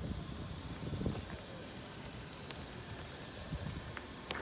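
Outdoor background noise: a low rumble with crackling and scattered faint clicks.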